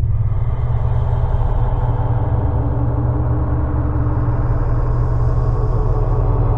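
Steady deep rumbling drone with faint sustained tones held above it, the low sound-design drone of a horror film score.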